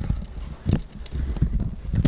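Footsteps on a hardwood floor: a few dull knocks, evenly spaced about two-thirds of a second apart.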